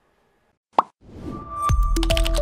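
A single short pop, then a rising whoosh that swells into the TV station's closing ident music, which opens with a deep hit near the end.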